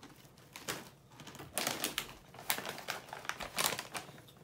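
Plastic Doritos snack bags crinkling and rustling in irregular bursts as they are handled and swapped.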